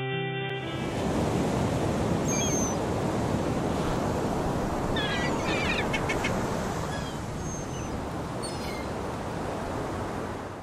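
A music cue ends just after the start and gives way to a steady wash of sea surf, with short bird calls over it several times.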